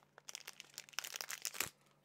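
Plastic packaging crinkling and crackling in quick irregular clicks as it is handled and opened, thinning out near the end.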